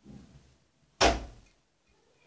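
A single sharp thump about a second in, dying away within half a second, like a door shutting.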